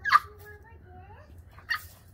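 French bulldog puppy giving two short, sharp barks about a second and a half apart, with faint whining in between.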